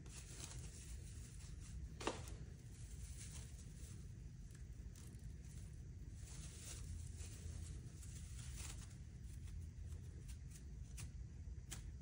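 Faint rustling and scraping of frayed, shot-through Kevlar fabric layers being handled and laid on a wooden tabletop, with one sharper click about two seconds in.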